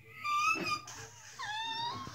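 A girl's voice drawing out the word "at..." in a high, sliding, sing-song pitch, in two or three stretched phrases.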